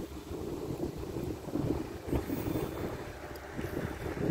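Wind buffeting the handheld camera's microphone, an uneven low rumble that rises and falls in gusts.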